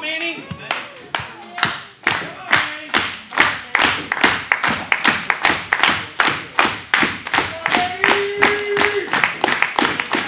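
Wrestling crowd clapping in rhythm, about three claps a second, rallying behind a wrestler. A voice calls out with a held shout near the end.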